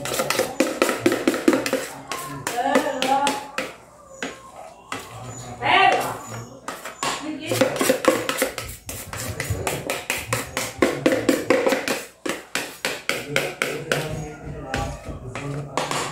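Spoon scraping and tapping against a metal pot while cake batter is emptied out of it: a rapid, fairly regular series of sharp clicks, several a second, with voices in the background.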